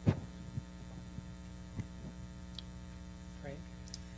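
Steady electrical mains hum in the sound system during a pause in the talk, with one sharp click just after the start and a few faint ticks after it.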